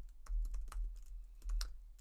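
Typing on a computer keyboard: a quick, uneven run of about a dozen key clicks as a line of code is entered.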